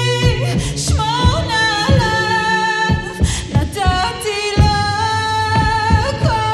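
A woman singing a slow Hebrew ballad a cappella, holding long notes that bend and slide, over a steady low drone and irregular deep thumps.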